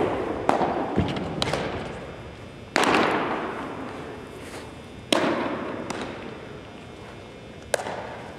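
Baseball pitches popping into catchers' mitts, a series of sharp cracks each ringing out in a long echo off the gymnasium walls. The two loudest come about three and five seconds in, with fainter pops between and near the end.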